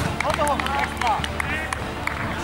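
Several voices shouting and calling out on a football pitch during play, over steady background music.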